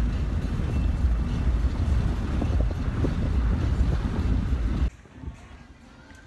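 Wind rushing in through an open car window while driving, buffeting the microphone with a heavy low rumble. It cuts off suddenly about five seconds in, leaving a much quieter outdoor background.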